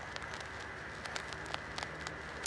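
Low, steady background hiss with a few faint clicks near the end, as the camera and flash are handled.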